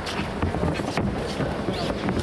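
Sanda (Chinese kickboxing) sparring: several sharp thuds of gloved punches and kicks landing and feet moving on the ring canvas, over a steady murmur of voices in a large hall.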